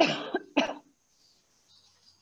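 A person coughing twice in quick succession, the two coughs about half a second apart.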